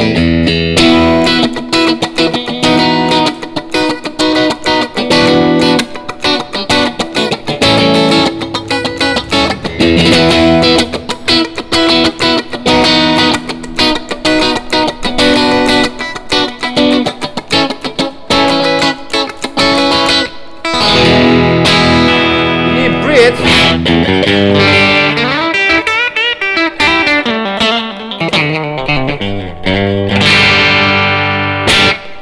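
Tokai AST-52 Goldstar Sound Stratocaster-style electric guitar played through an amp with light overdrive: a continuous run of picked notes and chords, with bent notes in the last few seconds.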